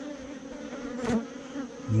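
Honeybees humming steadily, the massed wingbeat hum of a colony on the open frames of a nuc hive.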